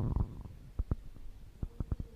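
Quiet handling noise: a low rustle at the start, then about five light knocks over the next second and a half, as a booklet is opened and its pages turned.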